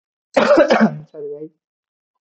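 A person clearing their throat: a rough burst about a third of a second in, followed by a short voiced hum.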